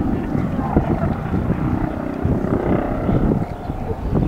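Bölkow Bo 105 helicopter in flight at a distance, its rotor and twin turbine engines heard as a continuous, uneven low sound.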